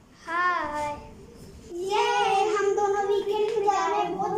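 A child's high voice in a sing-song: one short note that rises and falls, then from about two seconds in a long held, slightly wavering note.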